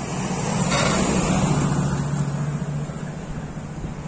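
A pickup truck drives past close by: its engine note swells as it approaches, drops in pitch as it goes by, then fades away.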